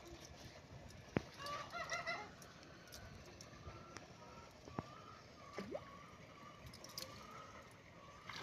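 A bird calling faintly: a short call with several overtones about two seconds in, then a thin wavering call lasting several seconds. A few sharp clicks break in.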